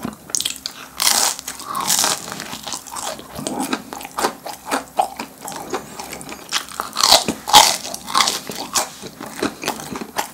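Close-up bites and chewing of a crisp fish-shaped bungeoppang pastry: a run of crackling crunches, loudest about a second and two seconds in and again around seven seconds, with quieter chewing between.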